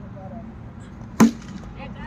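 A cricket bat striking the ball: one sharp, loud crack about a second in.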